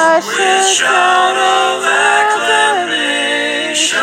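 A cappella vocal group singing a hymn in close harmony, holding long chords over a low bass voice, with no instruments. A new sung phrase ("Oh") begins near the end.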